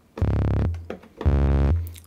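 Behringer RD-8 low tom fired with fast note repeats, fused into a buzzy sawtooth-like bass tone. It plays a short bassline that switches between two notes twice, the pitch set by the note-repeat rate (4 or 8 repeats per step) at the tempo.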